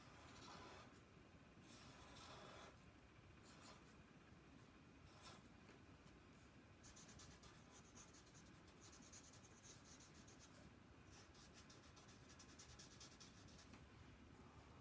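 Faint scratching of a black felt-tip marker on paper as the eyes of a cartoon cactus are drawn and filled in: a few separate strokes, then quick short back-and-forth strokes from about seven seconds in as the black is coloured in.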